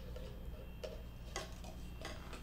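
A few soft, unevenly spaced ticks over a faint low hum.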